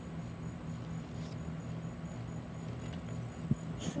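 Insects chirping steadily outdoors, short high chirps repeating about three times a second, over a low steady hum.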